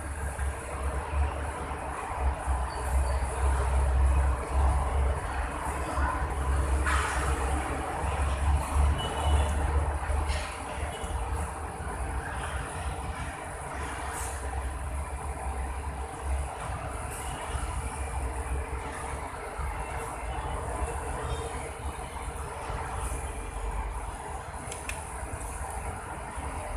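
Steady low mechanical rumble and hum with a constant thin high whine, with a few faint clicks as cables are handled.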